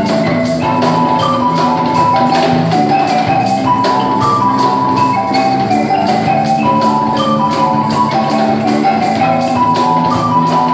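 Live band playing: a marimba runs quick melodic lines over electric bass, with a cajón keeping a steady beat.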